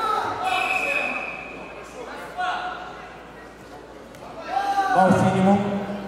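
Raised voices of coaches and spectators shouting at a hand-to-hand combat bout, echoing in a large sports hall; a long held shout from a man's voice near the end.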